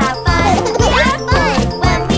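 Upbeat children's song music with a steady bass beat.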